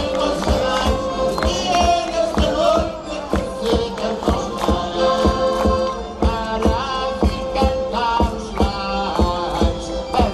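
A group of singers performing a traditional Madeiran Epiphany song (cantar os Reis) through a PA, with instrumental accompaniment and a steady beat of about two strokes a second.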